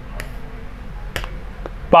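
A few light, sharp clicks of a stylus tapping on a smartboard screen as words are underlined, the clearest about a second in, over a steady low hum.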